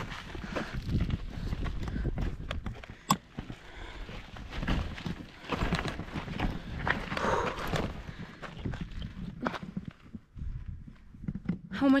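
Footsteps crunching on a rocky, sandy trail as a loaded touring bike is pushed uphill, with irregular clicks and knocks from the bike and its bags. The sharpest knocks come about three seconds in and again near the end.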